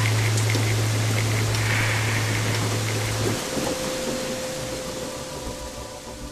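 A steady rain-like hiss that fades away over the last few seconds, with a low hum underneath that stops about three seconds in.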